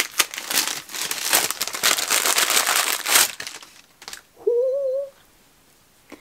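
Advent calendar wrapping crinkling as a small parcel holding a mini skein of yarn is unwrapped by hand, for about three and a half seconds. A brief hummed voice sound follows, rising then level, about four and a half seconds in.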